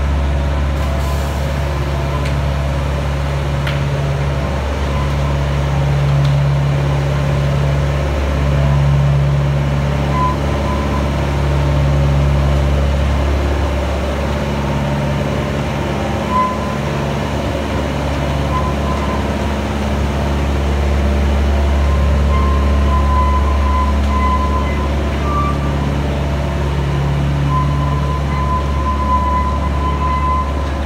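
Diesel engine of a one-third scale Flying Scotsman replica miniature locomotive running steadily under way, with a constant low drone and an engine note that swells and drops every second or two, along with the rumble of the carriages on the track. A thin high squeal comes and goes in the second half.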